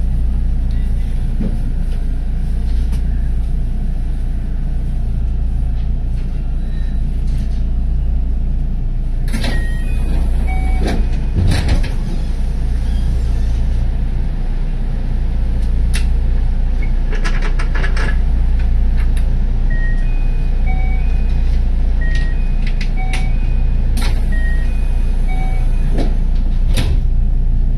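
JR West 223 series electric train standing at a station with a steady low hum, heard from the driver's cab. A cluster of clicks and knocks comes a little before halfway, then a string of short high beeps at changing pitches through the second half.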